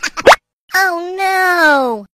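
A quick cartoon pop sound effect that rises in pitch, a short gap, then a child's voice holding one drawn-out sound that sinks in pitch.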